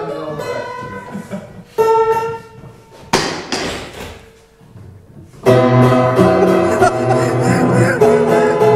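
Old upright piano with its front taken off: a few scattered notes and a harsh, noisy strike about three seconds in, then loud chords hammered out from about five and a half seconds in.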